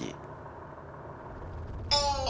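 A faint, steady low rumble of background noise with no distinct events, then background music with a guitar comes in suddenly just before the end.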